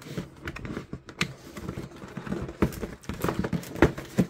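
Cardboard model-kit box being worked open by hand: irregular scraping, rubbing and tapping of a tight-fitting lid, with a couple of sharper knocks in the second half.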